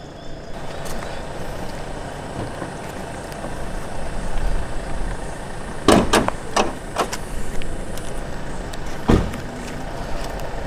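Car door and latch handling: a quick cluster of sharp clicks about six seconds in and a single heavy thump near the end, over steady outdoor background noise.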